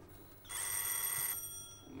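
A doorbell rings once: a bright electric bell tone of under a second that rings on briefly as it fades.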